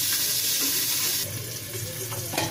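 Cauliflower frying in oil under the lid of a metal kadhai, a steady sizzling hiss that drops off abruptly a little over a second in.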